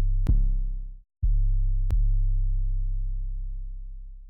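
Deep, sine-like electronic bass notes, each starting with a sharp click. One note cuts off about a second in; after a short gap another starts and slowly fades away.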